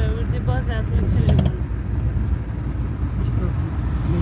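Steady low rumble of a car on the road, heard from inside the cabin, with a woman's voice over it in the first second.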